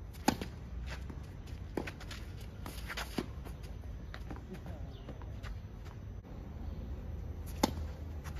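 Tennis rally: racket strings striking a tennis ball in sharp pops. The serve about a quarter-second in is the loudest, fainter hits from the far end follow around two and three seconds in, and a loud near-side forehand comes near the end.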